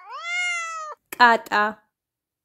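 A domestic cat meowing once, a single call of about a second that rises in pitch at its start and then holds steady.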